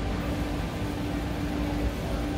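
Steady background rumble and hum inside a large store, with a faint steady tone held through most of it.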